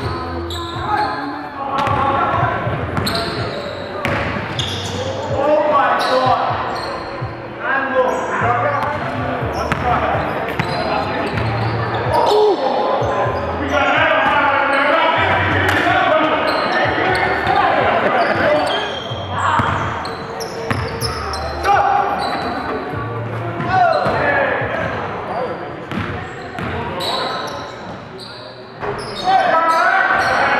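Basketball game sounds in a gym: players' and onlookers' voices echoing in the hall, with a basketball bouncing repeatedly on the court floor.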